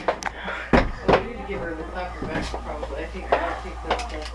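Irregular knocks and taps as a toddler bangs a handheld toy against the inside of a playhouse, the sharpest about a second in, with faint babble and voices between them.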